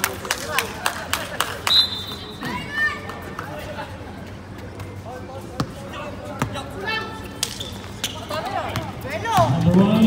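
Basketball dribbled on a hard outdoor court: a quick run of sharp bounces in the first two seconds, then scattered single bounces, with players calling out and louder shouts near the end.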